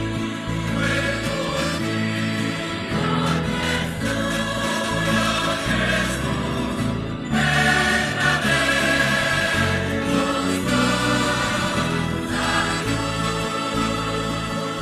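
A large choir singing a hymn, growing louder about halfway through.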